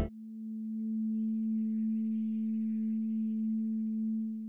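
A single steady low hum tone with a faint overtone above it, swelling in over the first second and then holding level, with a faint thin high whine over it.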